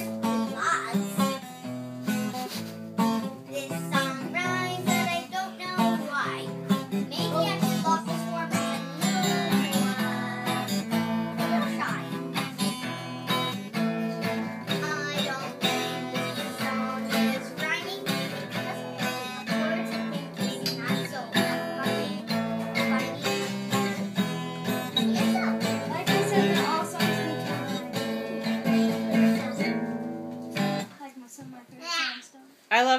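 Music led by a strummed acoustic guitar, playing steadily.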